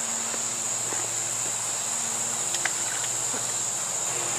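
Steady high-pitched insect chorus, crickets, chirring without a break, with a few faint ticks around the middle.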